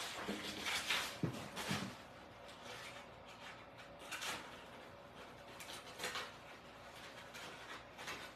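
Scissors cutting through rolled brown craft paper, with paper rustling: a few short, faint snips and crinkles, most of them in the first two seconds and a couple more later.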